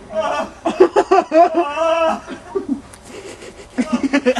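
People laughing in short, choppy bursts for about two seconds, then laughing again briefly near the end.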